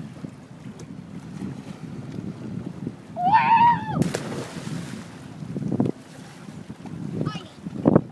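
A person whoops, then a sudden splash as someone jumps into the sea, with a hiss of churned water fading over the next couple of seconds. Wind rumbles on the microphone throughout.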